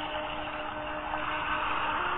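Soft sustained background music under a meditation: a held chord of steady tones over a light hiss, changing to a new, slightly higher chord near the end.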